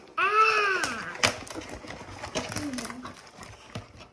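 A short vocal call near the start, gliding up and then down in pitch, followed by light clicks and knocks of plastic toy-leash pieces being handled.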